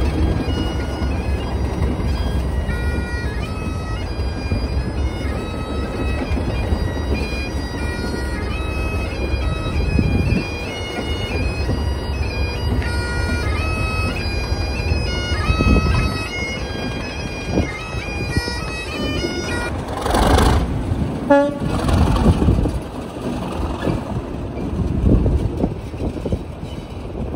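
Highland bagpipes playing a tune of held notes over the low rumble of a Class 37 diesel locomotive's engine. The piping stops about 20 seconds in, and a few louder surges of noise follow.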